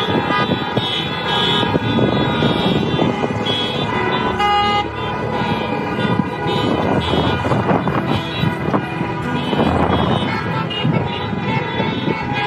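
Many car horns honking at once, overlapping in several pitches, with cars driving past.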